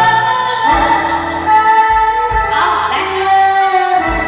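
A slow song playing loudly through the stage sound system, with long held high melody notes over deep bass notes that come about once a second.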